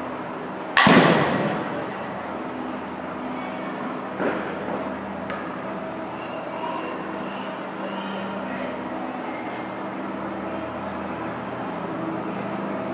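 A bat striking a softball off a batting tee about a second in: one sharp, loud crack that rings briefly. A smaller knock follows about four seconds in, over a steady background hum.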